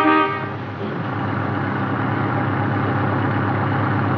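A car horn toots once, briefly, then a car engine runs steadily with a regular low chug.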